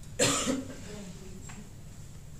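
A person coughing once: a short, sharp cough about a quarter of a second in, loud against the quiet room.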